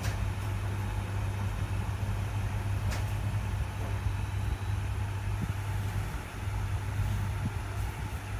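A steady low mechanical hum, like a motor running, with one sharp click about three seconds in.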